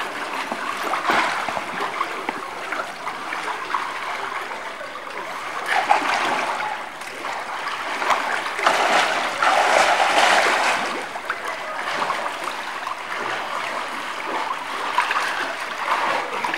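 Canal water splashing and sloshing close by from a person swimming. It comes in uneven surges, louder about six seconds in and again from about eight to eleven seconds in.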